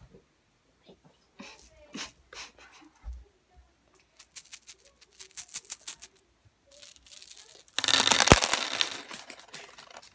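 A small clear plastic bag of small hard pieces being handled and shaken: scattered clicks and rapid taps, then a loud burst of rattling about eight seconds in that lasts about a second and a half.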